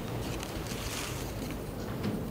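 Quiet room tone: a steady low hum and hiss, with a few faint rustles of movement.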